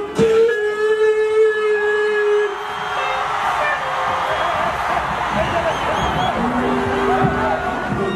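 A single voice holds one long note for about two seconds over a sound system. Then a large stadium crowd cheers and screams, with a few held tones rising out of it near the end.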